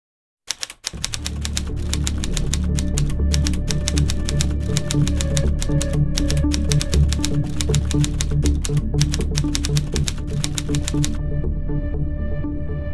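Typewriter key clatter sound effect, rapid irregular clicks, over background music with a low, steady pulse. The typing stops near the end while the music carries on.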